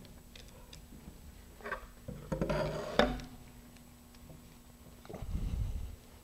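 Handling noises from gloved hands working on a fiberglass rocket body: soft rubbing and light knocks, a louder scuffle ending in a sharp knock about three seconds in, and a low rumble near the end.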